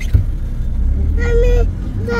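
A car running, heard from inside the cabin as a steady low rumble.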